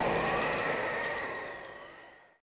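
A sudden rush of noise with a steady high tone running through it, which fades away smoothly over about two seconds. It is typical of a transition sound effect laid in at an edit in a broadcast.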